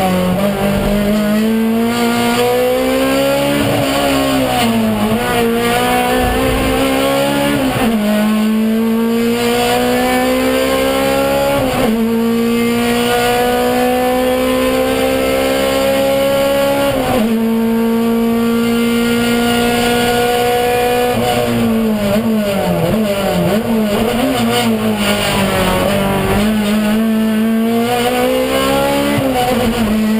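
In-car sound of a touring race car's engine under hard acceleration: the pitch climbs and drops sharply at each upshift, rises slowly for a long stretch in a high gear down the straight, then falls and wavers as the car slows and downshifts, and climbs again near the end.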